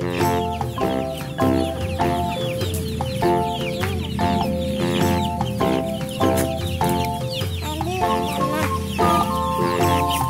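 Background music with a steady rhythm and bass line, with a flock of village chickens and their chicks clucking and peeping over it.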